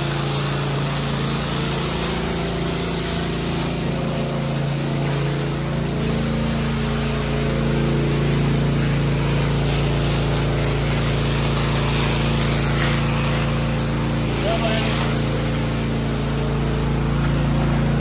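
A hose jet spraying water onto a wet concrete floor, with a steady motor hum running underneath.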